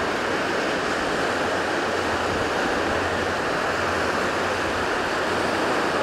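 A steady, even rushing noise like running water or wind, with no rise and fall.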